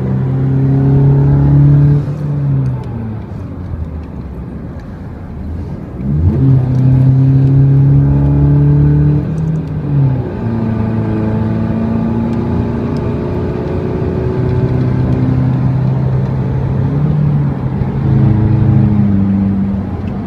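Chevrolet Colorado 2.5-litre four-cylinder turbodiesel with a remapped ECU, heard from inside the cab as it drives through the gears of its five-speed manual. The engine note falls away about two seconds in and again about ten seconds in, and climbs back sharply about six seconds in.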